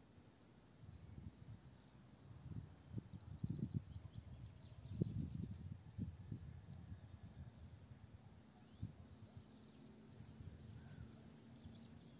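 Faint outdoor ambience during a quiet pause: a few short high bird chirps early on and a high insect trill from about ten seconds in, over irregular soft low thuds.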